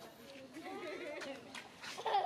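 Baby macaque crying in a run of wavering squeals that rise and fall in pitch, the distress cries of an infant being weaned by its mother.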